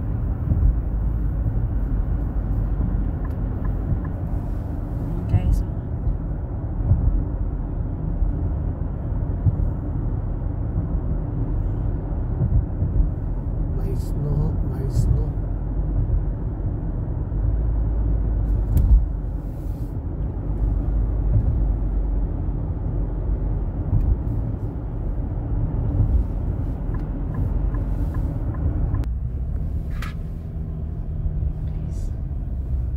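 Steady low rumble of tyre and engine noise inside a car cabin, driving on a snow-covered highway. Near the end the higher part of the noise drops away, leaving a lower rumble.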